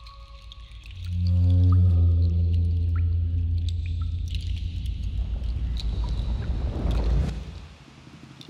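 A low, steady eerie drone with overtones, an added atmosphere sound for the cave at night. It swells in about a second in and fades out near the end, with a few faint clicks over it.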